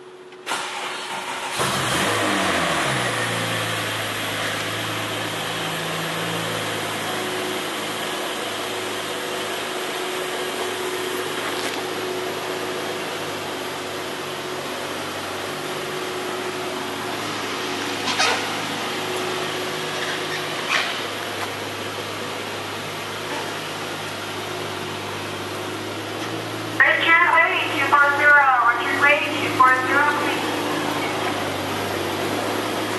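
Porsche 911 Turbo's flat-six engine starting about a second and a half in, its revs dropping and settling into a steady idle. There are two short knocks past the middle, and a person speaks near the end.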